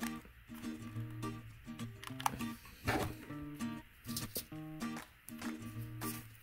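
Background instrumental music: a steady run of melodic notes with a few faint clicks.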